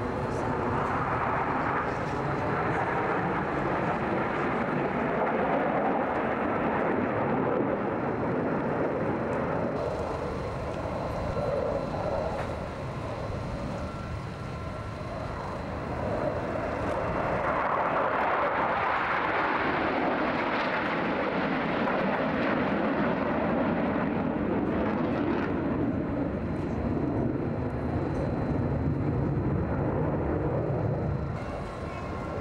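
Jet noise from a formation of six twin-engine MiG-29 Fulcrum fighters flying past, a continuous loud roar. It is strong at first, eases off around the middle, and swells again for the last dozen seconds as the formation passes.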